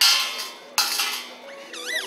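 Coins dropped into a street performer's metal collection tin: two loud clinking jingles, one at the start and one just under a second later, then a high wavering voice near the end.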